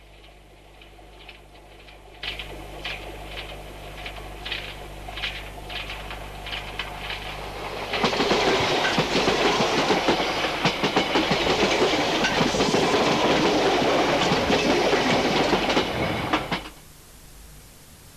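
Electric Underground train passing at track level: wheels click over the rail joints in a quickening rhythm as it comes close, then a loud dense rumble of wheels on rail as it goes by, cut off abruptly near the end.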